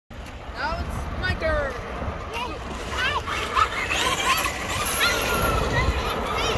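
Traxxas Rustler RC truck's electric motor whining in short rising and falling revs as it is driven away across the dirt, over a low rumble of wind on the microphone.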